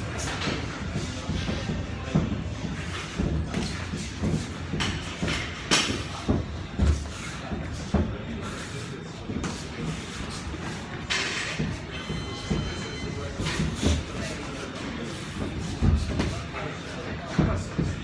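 Boxing sparring: irregular thuds of gloved punches landing and feet shuffling on the ring canvas, spaced a second or so apart, over background voices and music.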